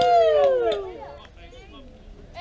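Softball plate umpire's long, loud shouted strike call, the pitch rising and then falling, dying away about a second in; faint voices follow.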